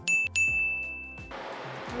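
A bright bell-like ding sound effect, struck three times in quick succession and ringing on for about a second, over background music.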